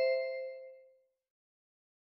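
The fading ring of a two-note descending chime, high note then low, dying away within the first second; it is the signal marking the end of a listening-test item.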